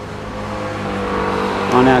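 A motor vehicle's engine running with a steady hum that slowly grows louder; a voice begins speaking near the end.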